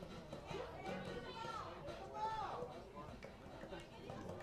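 Indistinct voices talking and calling out, with a couple of louder rising-and-falling calls midway.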